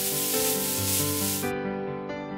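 Rustling, scraping sound effect of a snake slithering over dry leaves, which cuts off about one and a half seconds in, over background music.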